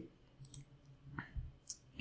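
Two faint computer mouse clicks, one about half a second in and one near the end, with a soft low bump between them.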